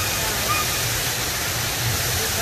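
Steady rushing of water from a show-scene waterfall, an even hiss with a low hum beneath it and a few faint short chirps over the top.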